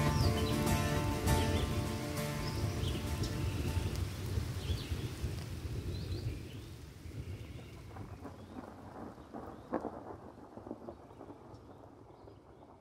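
The last sustained notes of an ambient synth track fade out over a soundscape of rain and rolling thunder, with a few high chirps. The whole mix slowly dies away.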